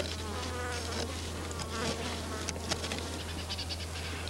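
A sharp stone flake scraping and shaving a wooden stick: a run of short scratchy strokes and clicks, with a wavering whine about half a second in, over a steady low hum.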